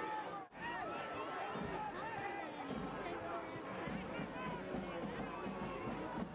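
Soccer stadium crowd ambience: a steady hubbub of many voices and calls from the stands. The sound drops out briefly about half a second in, then carries on at an even level.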